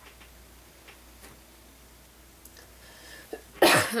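A few faint ticks as a clear acrylic stamp is handled on card, then near the end a woman's sudden loud sneeze-like burst followed by throat clearing.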